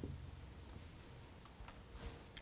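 Dry-erase marker writing on a whiteboard: faint strokes and light taps of the tip on the board.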